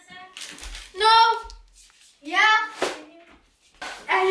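Girls' voices making short wordless exclamations: a breathy rush of air, then two loud cries about a second apart, reacting to the heat of jalapeño Cheetos that they say is burning their lips.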